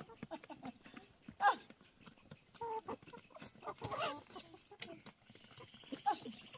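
Domestic hens clucking while they feed, with short calls about a second and a half in, near the middle and around four seconds.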